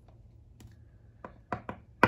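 A few light, irregular clicks from a coin and fingers handling a scratch ticket on a wooden table, with a sharper click at the end.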